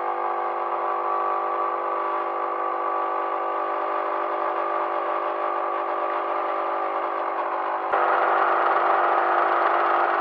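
Capsule coffee machine's pump humming steadily while it brews coffee into a glass of ice. It grows louder and hissier about eight seconds in.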